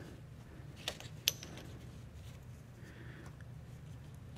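Small wooden inlay pieces are handled and pressed into their recess by hand. Two light clicks come about a second in, the second a sharp tick, then a few faint taps over a low steady room hum.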